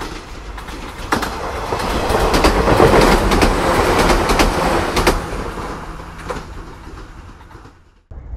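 A train passing by: the rumble swells to a peak about three seconds in and then fades away, with sharp wheel clicks over the rail joints throughout.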